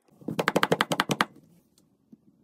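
A quick rattling run of about a dozen sharp clicks in about a second.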